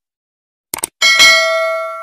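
Two quick mouse clicks, then about a second in a single bell ding that rings on and slowly fades: the sound effect of a subscribe-button and notification-bell animation.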